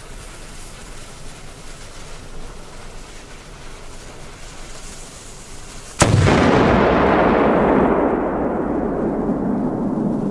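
A large flash-powder firecracker exploding with a single very loud bang about six seconds in, after a few seconds of low background while the fuse burns. The bang is followed by a long rumbling tail that fades over several seconds, its highs dying away first.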